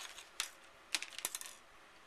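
A handful of light clicks and taps as a patterned cardstock flap is handled and laid down on a cutting mat.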